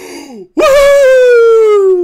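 A man's short breathy gasp, then a loud, drawn-out wail held for about a second and a half, sliding slowly down in pitch.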